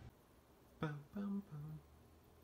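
A male voice humming three short, level notes, starting sharply about a second in.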